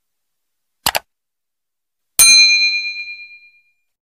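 Subscribe-button sound effect: a quick double mouse click about a second in, then a bright bell ding that rings out and fades over about a second and a half.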